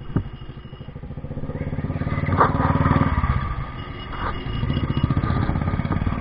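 Motorcycle engine running at low speed with a steady, rapid pulse, picking up about a second in and easing off around four seconds in.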